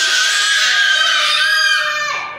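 A group of young children shouting together in one long, high-pitched yell that dies away at the end.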